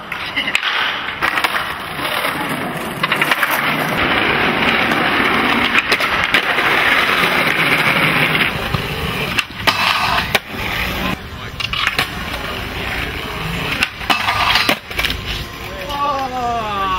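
Skateboard wheels rolling on paving stones for several seconds, then a run of sharp clacks and knocks as the board hits the ground.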